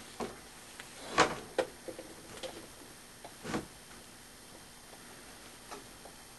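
A few light, irregular clicks and knocks over a low steady background, the loudest about a second in and another about three and a half seconds in.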